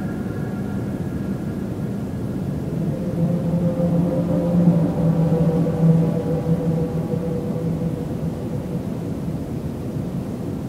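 Heavily degraded ambient music drone: a dense rumbling hiss under faint held organ-like tones. The higher tones fade out early, and low sustained notes swell up in the middle before sinking back into the noise.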